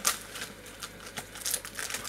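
Peeps marshmallow-chick packaging being handled, crinkling and rustling with a few small clicks.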